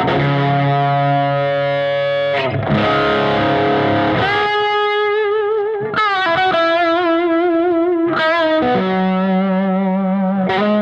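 Epiphone ES Les Paul Pro semi-hollow electric guitar played very loud through a distorted amp. A held chord gives way to sustained single notes with upward string bends and wide vibrato, and a lower note comes in near the end. The notes ring out without uncontrolled feedback.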